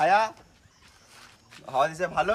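Voices speaking in two short bursts, split by a quiet gap of about a second.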